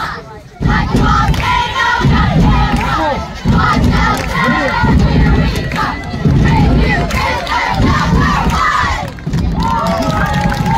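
Middle-school girls' cheer squad shouting a cheer together, many young voices in loud, short shouted phrases.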